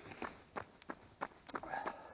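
Running footsteps on a tarmac road, about three strides a second, heard through a handheld camera carried by the runner.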